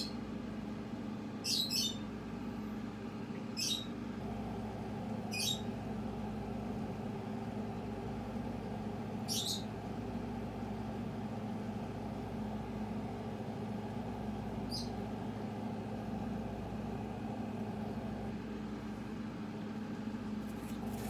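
A steady low hum with several held pitches, and short high squeaks or chirps, each well under half a second: about every two seconds at first, then further apart, the last about three-quarters of the way through.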